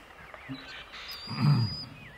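A short, low grunt-like vocal sound about one and a half seconds in, with a thin high whistle at the same time.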